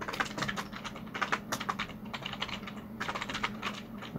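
Computer keyboard being typed on: a quick, irregular run of key clicks as a line of code is entered.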